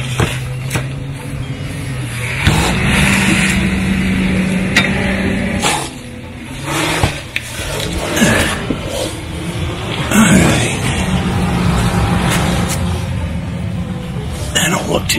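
Rustling and knocks of a handheld camera rubbing and bumping against a vehicle's underbody as it is moved around, over a steady hum that steps up in pitch about two seconds in, drops out midway and comes back later.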